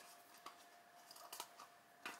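Near silence: room tone with a faint steady hum and a few faint clicks, about half a second and a second and a half in, from packaging being handled out of shot.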